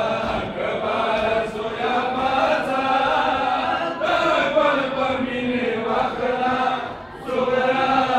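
A crowd of men chanting a Pashto noha together in unison, over sharp strokes of hands beating on chests (matam) that come about once a second. The chant dips briefly about seven seconds in, then comes back in strongly.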